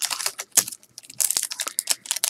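Foil trading-card pack crinkling and crackling as it is pulled from the box and handled: a run of small sharp crackles with a brief lull around the middle.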